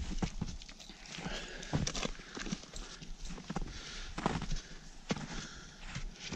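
Winter hiking boots crunching through deep snow in uneven, irregular footsteps while crossing a small stream on snowy rocks.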